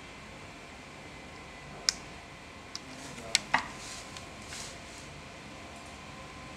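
A few light, sharp clicks of multimeter probe tips tapping the components of a laptop motherboard, four in all from about two seconds in, the last two close together, over a faint steady background hum.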